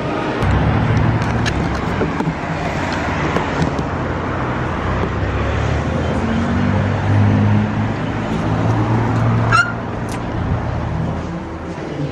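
Outdoor road traffic: a motor vehicle's engine running close by, a low steady rumble, with a short rising squeak near the end.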